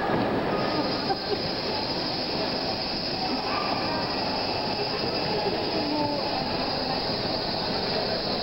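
A video's soundtrack played over a hall's loudspeakers: a steady noisy wash with scattered short squeaks, and two brief knocks about a second in.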